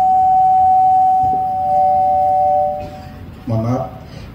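A loud, steady high ringing tone, with a second, lower steady tone joining about a second in. Both fade out about three seconds in, followed by a brief snatch of a man's voice.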